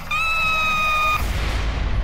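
A young girl's scream, one held high-pitched shriek of about a second. It cuts into a low rumbling boom as a trailer sound effect.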